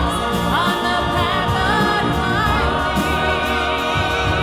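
Live symphony orchestra with a choir of singers performing, the voices held with vibrato and one voice sliding up and down over the chorus, with a steady drum beat underneath.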